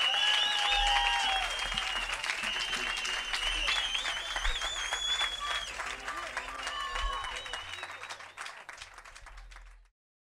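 Audience clapping and cheering after a live rock song, with high whistles over the clapping. It dies away steadily and fades out near the end.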